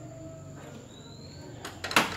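Mostly quiet, then a quick cluster of mechanical clicks and a knock near the end, as the Kubota L3602 tractor's ignition key and control levers are worked just before the engine is started.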